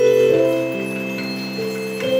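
Youth recorder orchestra playing slow, sustained music: several held notes sound together and change every half second to a second.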